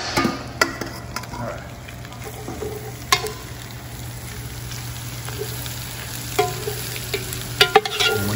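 Chopped onions sizzling as they go onto browned meat in a cast iron Dutch oven, a metal spoon stirring and scraping through them with a few sharp knocks against the pot near the start, about three seconds in and near the end. The onions are starting to sweat, their water lifting the browned bits off the bottom.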